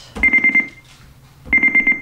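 Electronic treadmill console beeping as its buttons are pressed: two short bursts of rapid, high-pitched beeping about a second apart.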